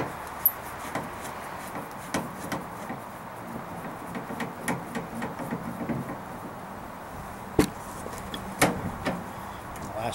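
Torx T30 screwdriver backing out tailgate handle screws: small scattered clicks and scrapes of the bit in the screw heads, with a few sharper clicks about half a second in and twice near the end, over a steady faint hiss.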